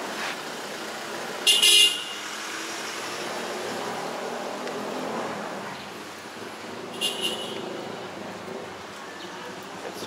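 Street traffic passing at close range, with a vehicle horn honking sharply once about a second and a half in and again, more faintly, about seven seconds in.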